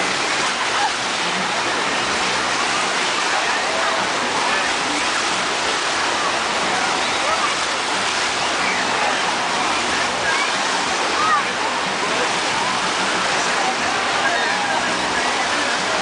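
Steady rush of breaking whitewater in a wave pool, with faint voices of swimmers in the background.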